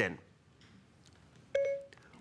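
Siri's activation chime on an iPad Air 2: a short, steady electronic tone about one and a half seconds in, the signal that Siri is listening for a spoken request.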